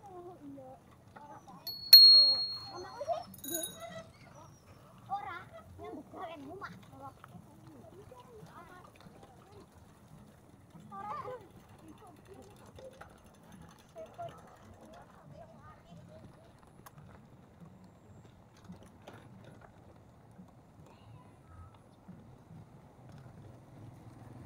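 A handlebar bicycle bell rings sharply once about two seconds in, and once more, shorter and softer, about a second later. Scattered voices and the low rumble of the bike rolling over a rough gravel lane carry on after it.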